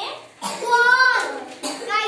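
Speech only: a teacher and young children talking in short phrases.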